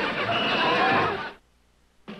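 High-pitched, whinnying cartoon-character laughter from several costumed TV characters, cut off abruptly a little over a second in, leaving near silence.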